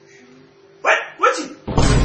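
Two short dog-like barks, falling in pitch, about a second in, then a louder, rougher burst lasting about half a second near the end.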